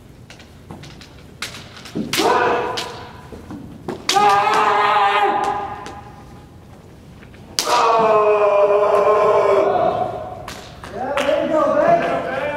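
Kendo players' kiai: four long, held yells, the loudest starting about four and eight seconds in, each set off by a sharp clack of bamboo shinai striking. Around five seconds in, a hiki-do (a torso strike made while stepping back out of close contact) lands on the do armour and scores.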